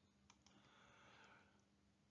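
Near silence: room tone with two faint clicks about a third of a second in, followed by a faint hiss that dies away about a second and a half in.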